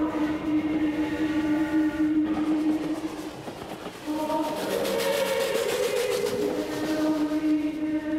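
Steam locomotive running, with a rhythmic chuffing clearest in the second half, under long held notes of choral music.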